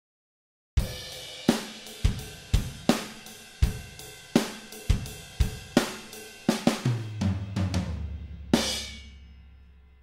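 EZdrummer virtual drum kit played from MIDI: a steady beat of ride cymbal with kick and snare starting about a second in, then a descending tom fill, and a crash cymbal with kick about eight and a half seconds in that rings out and fades.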